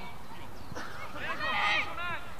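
Children shouting and calling out to each other on a football pitch, high and shrill, with the loudest shout about a second and a half in.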